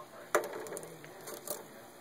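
Plastic hydroponic net cups being dropped into the holes cut in a plexiglass tank lid: one sharp clack, then a lighter knock about a second later.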